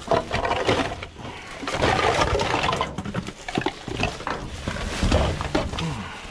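Trash being rummaged through in a dumpster: plastic bags and packaging crinkling and rustling, with small knocks as items are shifted.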